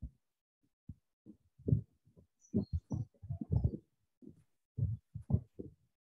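Ballpoint pen writing an equation on paper over a clipboard: irregular soft low taps and strokes. A few faint high chirps come about halfway through.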